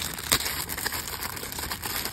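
Clear plastic packaging bag crinkling as it is handled and pulled at, with one sharp snap about a third of a second in.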